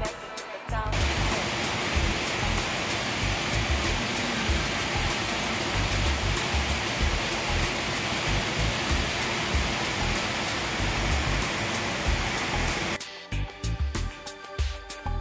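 Ryuzu Falls, a cascading mountain waterfall, rushing steadily; the water sound cuts in about a second in and cuts off about a second before the end. Background music with a regular beat plays underneath it.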